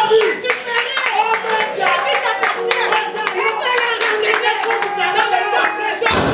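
Repeated hand clapping throughout, under a woman's loud, excited voice.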